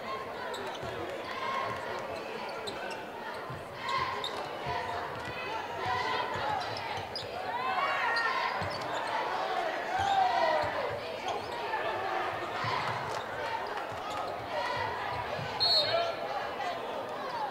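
Basketball dribbled on a hardwood gym court during play, with players' and spectators' voices echoing in the gym. A short, high referee's whistle blast comes near the end.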